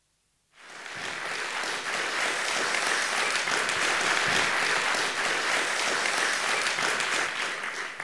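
Theatre audience applauding, starting suddenly about half a second in and dying away near the end.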